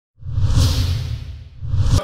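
Two whoosh sound effects of a channel logo intro, deep and hissing: the first swells up and fades, the second rises again and cuts off suddenly.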